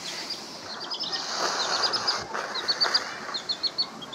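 Baby chickens peeping: quick runs of short, high peeps, three to five at a time, over a soft rustling noise.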